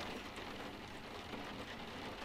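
Faint, steady rain ambience, a soft patter of drops.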